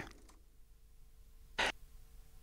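Quiet hall room tone with a faint steady hum, broken once by a short hiss-like burst of noise about one and a half seconds in.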